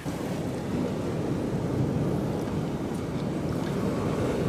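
Ocean surf washing over a rocky shore, with wind buffeting the microphone: a steady low rush.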